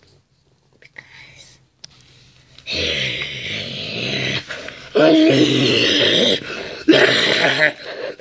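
A boy's voice making three long, raspy, breathy vocal noises, each lasting a second or more, after a quiet first couple of seconds.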